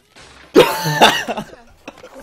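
A man bursting out laughing into a cough: two loud outbursts about half a second apart, then fainter sounds.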